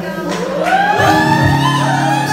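A man singing with live musical accompaniment, his voice sliding upward about half a second in and settling into a long held note.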